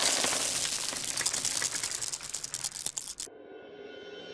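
Text-animation sound effect: a dense hiss full of rapid clicks, like static or fast typing, that cuts off abruptly about three seconds in. A quieter held chord of steady tones follows near the end.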